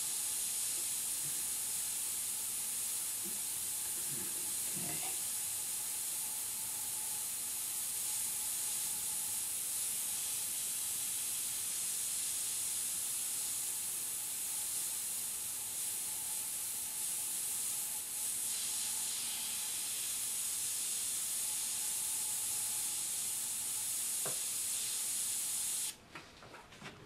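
Iwata airbrush spraying paint: a steady high hiss of compressed air through the nozzle that holds with only slight dips and cuts off suddenly at the end as the trigger is released.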